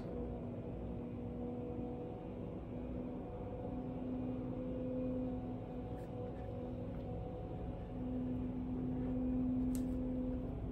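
A steady low hum that swells and fades over a low background rumble.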